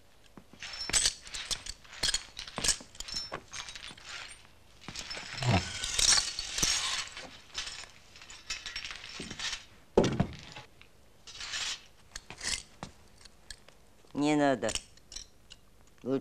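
Broken window glass being swept up with a straw broom and gathered by hand off a wooden floor: scattered clinks of glass shards, broom scrapes and a sharp knock about ten seconds in. Near the end there is a short voiced sound that falls in pitch.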